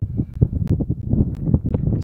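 Wind buffeting the camera microphone: low, uneven gusting noise, with a few faint clicks.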